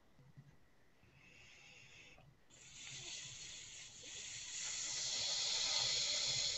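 A man's long, hissing breath into a close microphone: a short breath about a second in, then a longer one from about two and a half seconds that grows steadily louder.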